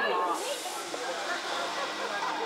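Indistinct voices from players and spectators, echoing in a large sports hall, with a short burst of hiss about half a second in.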